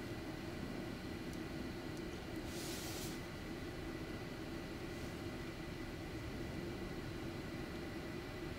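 Steady hiss and hum of an idle air traffic control radio feed between transmissions, with a short burst of static about two and a half seconds in.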